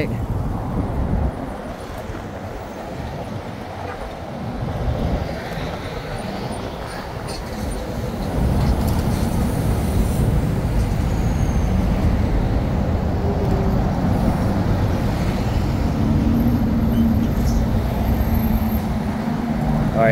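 Interstate traffic rolling slowly past close by, a steady rumble of engines and tyres that grows louder about eight seconds in. Near the end a low steady engine drone rises over it, as a semi truck comes alongside.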